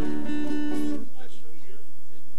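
Acoustic guitar chord strummed and left ringing for about a second, then cut off sharply.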